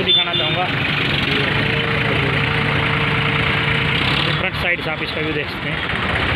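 An engine idling steadily, with people talking in the background near the start and again about four to five seconds in.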